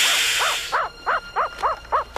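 Meerkat's loud alarm call, a rapid run of short barking yips about four a second, signalling that it has found a snake. Over about the first second a sharp hiss from the cornered cobra cuts across the calls.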